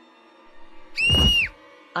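A girl's short, very high-pitched scream about a second in, held for half a second and dropping in pitch as it cuts off.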